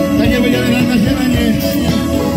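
A live band playing loud amplified music: drum kit, electric guitar and keyboard, with a voice over it.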